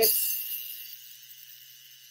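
Antique violet ray high-frequency device running, its glowing glass electrode held to the skin, giving a thin high-pitched buzzing hiss with a faint low hum. It is loudest at the start and fades to a faint hiss over about a second and a half.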